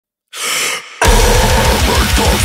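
A short, sharp gasp of breath, then about a second in a deathcore band comes in loud, with rapid kick drums under dense heavy music.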